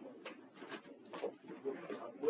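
Faint, indistinct voices murmuring in a small room, with a few light clicks scattered through.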